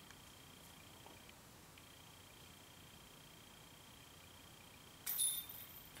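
Near silence with a faint steady high whine, then about five seconds in a brief metallic jingle: a disc golf putt striking the chains of the basket and going in.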